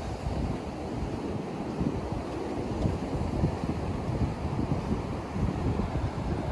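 Wind noise on the microphone, rising and falling, over the steady wash of ocean surf breaking on a beach.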